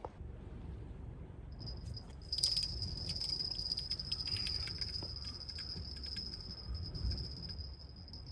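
Spinning fishing reel being wound in, bringing in a small fish on the line. It gives a steady high-pitched whine with light rapid clicking, starting a couple of seconds in.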